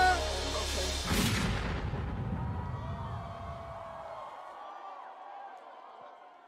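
A concert sound system playing a hip-hop track to its end: a final heavy boom about a second in, its echo fading out over the next few seconds.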